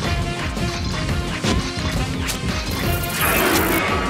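Action-scene background music under a run of sharp hit sound effects, with a loud crash starting about three seconds in and lasting nearly a second.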